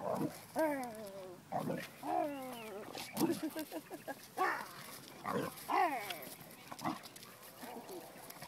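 Boxer dog vocalising excitedly while it plays: a string of short calls, many falling in pitch, mixed with a woman's laughter.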